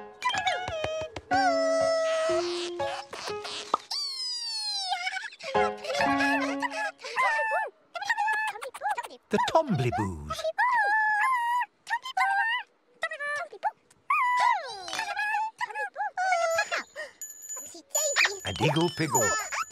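High, squeaky, sing-song gibberish voices of costumed children's-TV characters chattering and calling over light children's music. A few short low steady tones sound in the first seconds, and a long falling glide comes about four seconds in.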